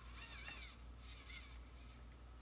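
Hobby servo motor in an animatronic Teddy Ruxpin's body whining faintly as it drives the lean movement, its pitch wavering up and down, most clearly in the first half-second.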